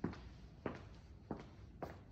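Footsteps on a bare concrete floor: four even steps at a walking pace.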